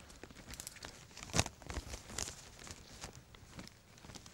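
Handling noise: a plastic apron crinkling and a stethoscope being picked up and fitted to the ears, a scatter of small rustles and clicks with one sharper knock about a second and a half in.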